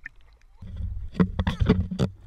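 Seawater splashing and sloshing right at the camera as it is moved at the surface, a low rumble with a few sharp splashes about a second in.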